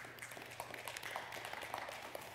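Faint rustling of paper with many small crackles and clicks: the thin pages of a Bible being turned on a pulpit.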